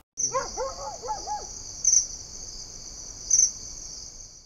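Crickets chirping in a steady high trill that swells louder twice, about a second and a half apart, with a few short bird calls in the first second and a half.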